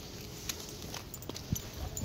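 Walking noise from a person with several leashed dogs on grass: a low rustle of steps and leash handling, with a few soft taps and knocks.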